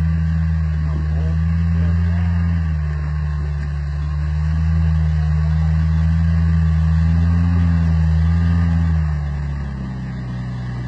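Lifted Toyota pickup's engine pulling up a steep, rutted rock and dirt climb at low revs. It holds a steady note that rises and falls slightly with the throttle, then eases off near the end.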